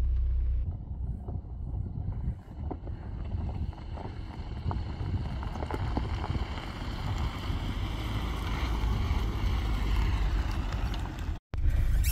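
Lada Samara hatchback on a dirt track, its engine running at low revs, under a heavy low rumble of wind on the microphone. The sound drops out for a moment near the end.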